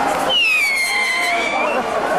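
A firework whistle that sounds for about a second and a half: high, falling in pitch and then levelling off, over crowd chatter.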